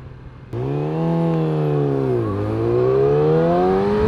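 A 2020 Yamaha R6 600 cc inline-four sport bike engine heard on board, coming in suddenly about half a second in. Its pitch dips to a low point about two seconds in, then climbs steadily as the bike accelerates.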